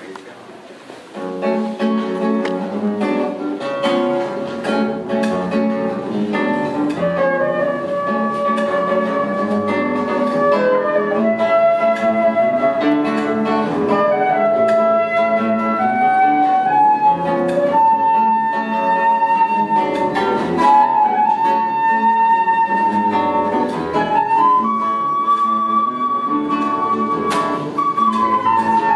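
Live acoustic trio of concert flute, classical guitar and double bass playing a slow piece. The music starts about a second in after a short lull, and in the second half the flute holds long notes over the plucked guitar.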